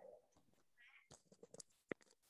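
Near silence: quiet room tone broken by a few faint clicks in the second half.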